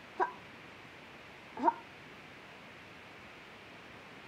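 A dog yipping twice: two short, high yelps about a second and a half apart, the second sweeping sharply up in pitch.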